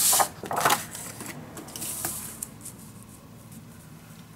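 Sheets of cardstock sliding and rustling across a paper scoring board: two short, loud swishes in the first second, then faint taps and rustles of the paper being handled.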